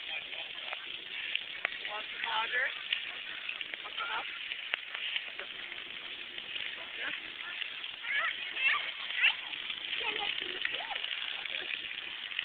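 Steady hiss of splash-pad water sprays, with faint children's voices calling in the distance.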